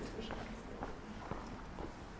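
Footsteps on street paving, a series of short clicks, with faint chatter of passers-by.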